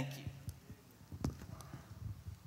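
A few faint, irregular knocks and rubs, the strongest about a second in: handling noise from a hand-held microphone as a document folder is closed and shifted.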